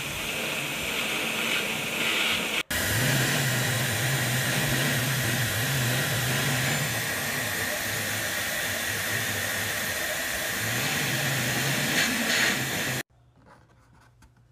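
Hair dryer blowing steadily and loudly onto a plastic container's price sticker, heating its glue so the label will peel off cleanly. The sound drops out for an instant about two and a half seconds in, then runs on with a low hum under the rush of air, and cuts off abruptly about a second before the end.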